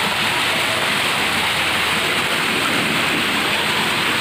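Garden fountains splashing steadily into a pond: water pouring from fish-statue spouts and cascading down a tiered stone fountain.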